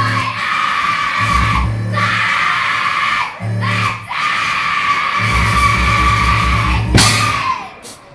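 Loud live punk band playing, with a woman screaming vocals into a microphone over pounding, pulsing bass and drums. The music breaks off briefly about three and a half seconds in, and again just before the end.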